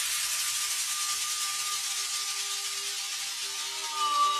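Breakdown in an organic house mix: the drums and bass have dropped out, leaving a steady hissing noise wash with a few faint held synth notes underneath.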